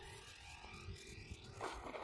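Faint outdoor background with uneven low wind rumble on the microphone, and a brief soft rustle near the end. No motor is heard: the plane is gliding with its throttle at zero.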